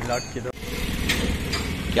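Motorcycle engine running steadily at low speed, with a brief hiss about a second in.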